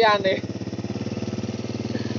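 Small motorcycle engine idling steadily, a fast, even run of firing pulses.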